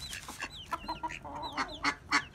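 A small flock of chickens clucking while pecking at scattered feed, with a run of short, high, falling peeps from young chicks among the clucks.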